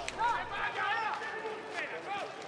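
Shouting voices of players and spectators on an open pitch, heard at a distance through the camera microphone, celebrating a just-scored goal.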